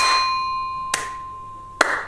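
Edited-in sound effect marking a correct answer: a sudden hit that leaves a steady bell-like tone ringing for nearly two seconds, with a sharp click about a second in and another sharp hit near the end.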